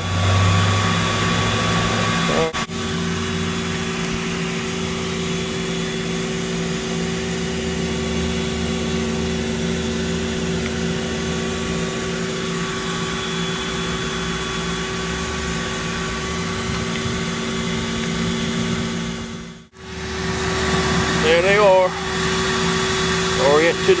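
A steady machine hum with several constant tones, broken by a brief dropout about twenty seconds in.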